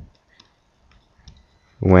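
A few faint, scattered clicks and taps of a stylus on a pen tablet as handwriting is written, between spoken words.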